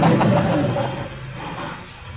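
A brief pause in a man's lecture: his voice trails off at the start, then only faint murmuring and low room noise fading quieter.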